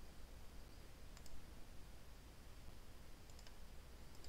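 A few faint computer mouse clicks over a low, steady room hum: one click about a second in, then a quick few near the end.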